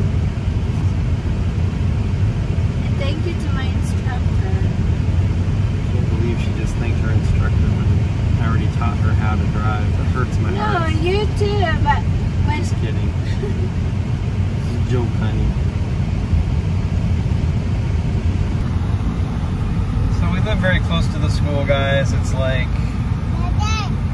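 Steady road and engine noise inside a moving car's cabin, with voices talking now and then, mainly about ten seconds in and again near the end.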